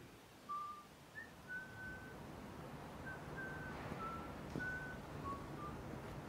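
A person whistling a slow tune of about nine short, separate notes at stepping pitches, over a low background rumble.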